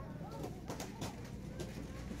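Background noise in a shop: a small child's voice wails and calls out in the distance over a low steady hum, with a few clicks.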